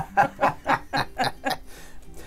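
A man laughing heartily: a run of about seven short 'ha' bursts, roughly four a second, fading out about a second and a half in.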